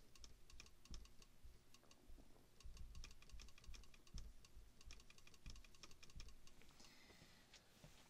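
Faint, irregular tapping and ticking of a marker writing on a glass lightboard, with a short scratchy stroke near the end.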